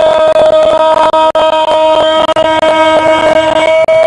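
A football commentator's long, drawn-out goal cry, a loud 'gol' held unbroken on one high, steady pitch.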